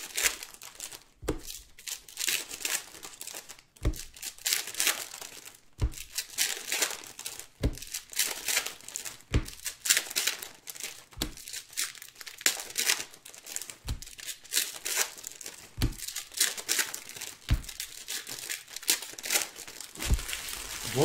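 Foil trading-card pack wrappers (2019-20 Panini Prizm) crinkling and tearing as they are handled and opened by hand. A short, soft thump comes about every two seconds.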